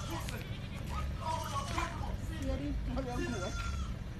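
A goat bleating, with people's voices around it.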